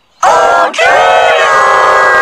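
Cartoon voices shouting a call, turned by a stacked pitch-shift 'G major' effect into a loud chord of several transposed copies at once. After a brief gap at the start come a short shout and then a longer held one.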